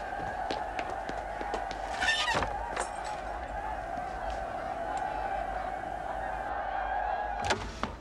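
One held, reedy tone with a fainter overtone above it, wavering slightly and cutting off abruptly near the end, with a few short knocks about two seconds in.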